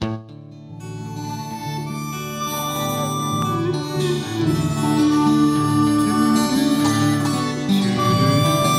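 Instrumental introduction of a folk song: a harmonica playing the melody over strummed guitar and a bass line, starting suddenly and building over the first second.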